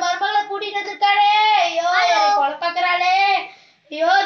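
A girl's high-pitched voice in long, drawn-out, sing-song phrases, falling away near the end.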